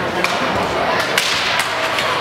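Ice hockey game on a rink: several sharp clacks of sticks and skates on the ice over a steady murmur of spectators' voices.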